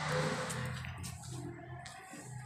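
A vehicle engine running close by, a low steady hum, with a rush of noise at the start that fades within about half a second.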